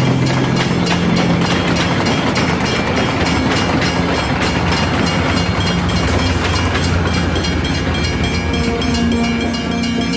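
A train passing close by, a loud steady rumble with fast clattering of wheels over the rails. Music begins to come in near the end.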